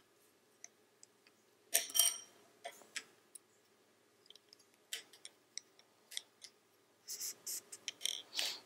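Wooden double-pointed knitting needles clicking and tapping against each other as stitches are worked, in scattered light ticks, with a louder clack about two seconds in and a quick run of clicks near the end.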